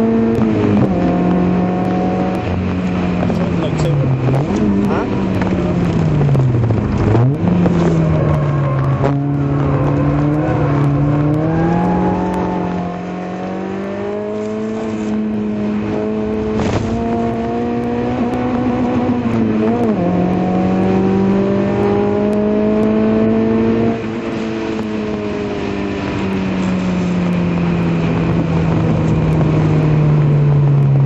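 Citroën Saxo VTS's four-cylinder engine, heard from inside the cabin, driven hard on track, its pitch rising and falling with the revs. There are two sharp dips in pitch about four and seven seconds in, and a quick drop near twenty seconds.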